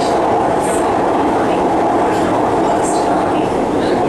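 Steady running noise of an MRT metro train heard from inside the carriage as it travels through an underground tunnel.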